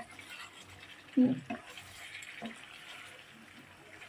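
Chicken and potato curry simmering in a pan: a faint, steady sizzling hiss.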